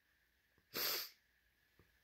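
A woman's single short sniff through the nose, a bit under a second in, the sniffle of someone crying.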